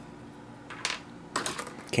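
A few light clicks and taps of small hard plastic items being picked up and set down on a desk, about a second in and again near the end.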